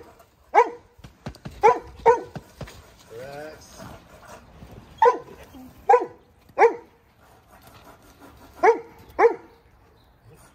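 A dog barking: single short, sharp barks at irregular spacing, about eight in all, with quieter gaps between.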